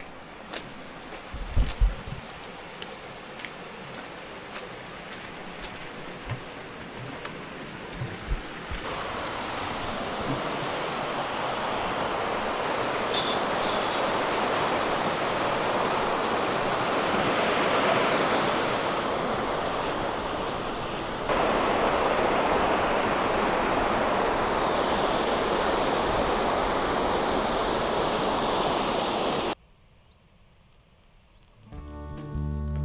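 Footsteps with scattered clicks and thumps, then a loud, steady rush of white water pouring through a stone channel beside a walkway. The rush gets louder abruptly about nine seconds in, again about twenty seconds in, and stops just before the end.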